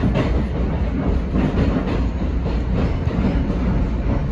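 Keisei 3100-series electric train running, heard from inside the front cab: a steady low rumble with wheels clacking over the points and rail joints.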